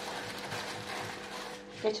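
Raw potatoes being handled and peeled with a small hand peeler over a wooden chopping board: light scraping and handling noises over a faint steady hum. A woman's voice starts near the end.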